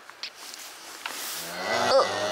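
A calf mooing: one call that starts about a second and a half in and swells to its loudest at the end.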